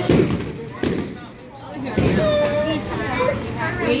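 Bowling alley: heavy thuds of bowling balls dropping onto the wooden lanes, one just at the start, another about a second in and a third near the middle, with a ball rolling down the lane and children's voices around.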